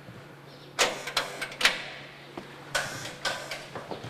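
A heavy iron-grilled apartment entrance door being unlatched and pushed open: sharp metallic clicks and clanks in two clusters, about a second in and again near three seconds.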